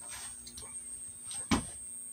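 A pause between speech in a small room: a low steady hum and a faint high whine, with a single knock about one and a half seconds in.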